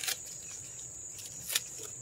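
Two short snips of hand scissors cutting Swiss chard stems, one right at the start and one about a second and a half in, over a steady high-pitched chirring of crickets.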